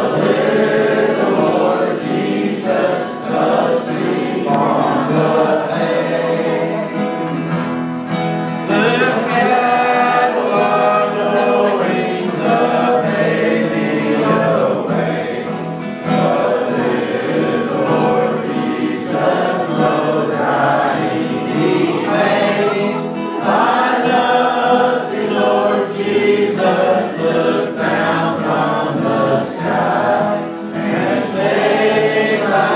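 Two acoustic guitars strummed while the two men sing a gospel-style song, with a roomful of voices singing along.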